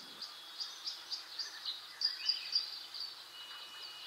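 Small birds chirping: many short, high chirps, several a second, over a faint hiss.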